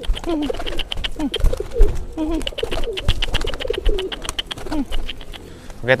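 Domestic pigeons cooing over and over, short rising-and-falling coos, with a burst of rapid wing fluttering around the middle. The cooing is a cock pigeon driving a hen, the courtship chase before she lays.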